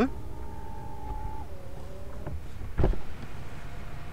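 Powered rear-door sunshade of a Genesis GV80 retracting: a steady motor whine drops in pitch partway through and stops after about two seconds. A single knock follows near the end.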